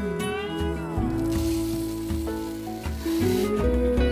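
Dry red lentils poured from a glass measuring cup into a plastic blender jar: a rushing rattle of grains, starting about a second in and lasting about two seconds, over background music.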